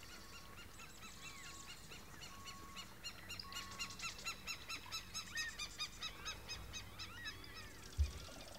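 Birds calling and chattering with many short, high notes. Near the middle comes a quick run of repeated notes, about four a second, and a few short steady whistles sound in the first half. A short knock sounds at the very end.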